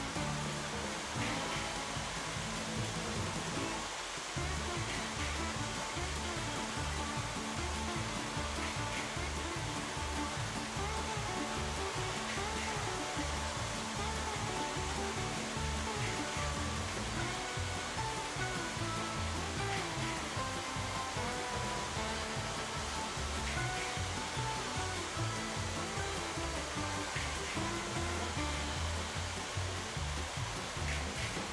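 Several toy electric trains running together on metal track: a steady whirring of motors and wheels with a rough, uneven low rumble of wheels rolling over the rail joints.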